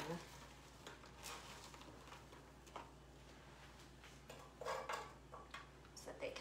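Quiet kitchen handling: a few faint, scattered clicks and light knocks of utensils and cookware, with a brief louder rustle a little before five seconds in.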